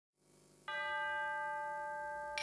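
A single bell-like chime struck once under a second in and left ringing, several clear tones sounding together and slowly fading.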